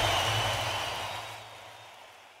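Live stadium concert sound fading out at the end of a song: the crowd's noise and the last ring of the band sink steadily to silence.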